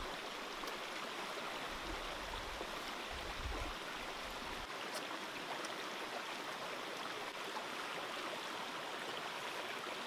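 A steady, even rushing noise like running water, with a few faint clicks.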